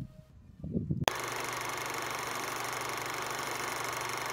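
A sharp click about a second in, then a steady even hiss with a faint hum: the old-film noise effect that goes with the vintage "The End" end card.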